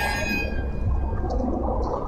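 Low, steady rumbling noise on a handheld camera's microphone out in the woods at night, with faint, indistinct sounds above it and no clear voice.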